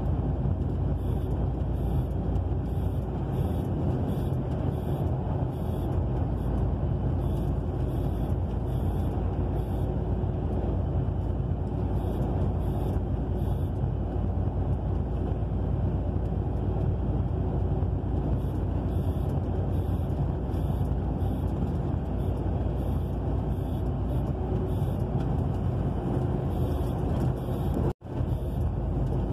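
A truck's diesel engine runs steadily with tyre and road noise, heard from inside the cab while cruising on the highway.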